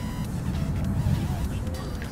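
Hands sloshing a fish about in shallow pond water while washing it, over a steady low rumble.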